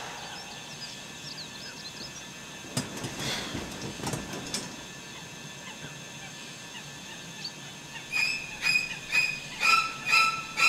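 Bedding rustling as a sleeper rolls over, then, starting near the end, an electronic alarm clock beeping, about two short high beeps a second.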